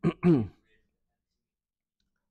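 A man clearing his throat, two short voiced bursts with a falling pitch right at the start.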